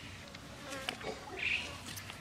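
Knives cutting cucumbers by hand: a few crisp clicks of the blade through the flesh, and a short scrape about one and a half seconds in.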